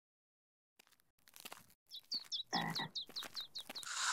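Cartoon sound effects: a quick run of short, high, falling chirps, about four or five a second, a man's grunt about halfway through, and a garden hose starting to spray with a hiss near the end.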